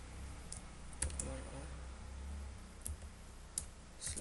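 Typing on a computer keyboard: about five separate keystrokes, unevenly spaced, over a low steady hum.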